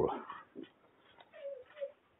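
Faint small waves lapping at a reedy lakeshore, with a brief soft whine about a second and a half in.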